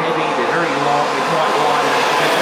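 Ferrari Formula 1 car's turbocharged V6 hybrid engine running steadily on the pit-lane speed limiter as the car pulls away down the pit lane.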